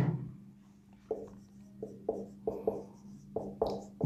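Marker pen writing on a whiteboard: about eight short strokes, starting about a second in.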